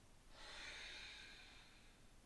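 A woman's soft ujjayi breath: one long, audible exhale through the nose with the throat slightly narrowed. It starts about a third of a second in and fades away.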